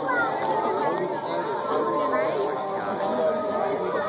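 Chatter of a crowd of people: many voices talking over one another at once, with no single voice standing out.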